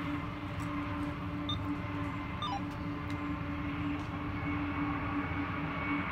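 Distant diesel locomotive at the rear of a loaded freight train running, a steady low rumble with a constant hum through it, as the train draws away.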